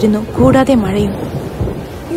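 A thunderstorm: thunder rumbling over steady rain. A voice speaks over it during the first second.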